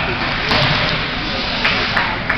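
Ice hockey rink during play: steady crowd murmur, with a sharp knock about half a second in and another near the end from sticks, puck or players hitting the ice and boards.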